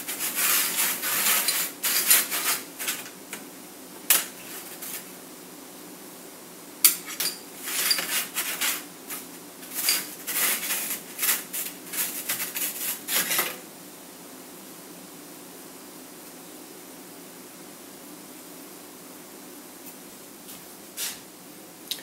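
Small stainless steel tool parts clinking and scraping against a plastic tray and each other as a hand puts them into cleaning solution and moves them around, in irregular bursts over the first half. After about 13 seconds only a faint steady room hum remains.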